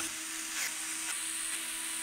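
Small cordless electric screwdriver motor running steadily as it drives a short screw through a metal fan bracket into a PC radiator.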